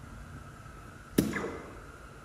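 A single dart striking a soft-tip electronic dartboard a little past the middle, a sharp hit with a short ringing tail as the board registers the score.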